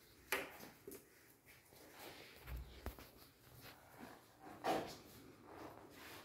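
Faint sounds of a small dog searching at shrink-wrapped packs of bottled water: short sniffs and scuffs. The sharpest come about a third of a second in and just before five seconds, with a dull thump about two and a half seconds in.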